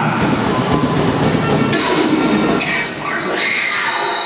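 Opening of a cheerleading routine's music mix: a dense, noisy build of sound effects over crowd noise, with a bright hiss cutting in about halfway and sliding, gliding tones after it.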